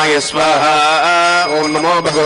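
Male priests chanting Sanskrit Vedic mantras in a sacrificial fire ritual, voices overlapping and holding long drawn-out notes.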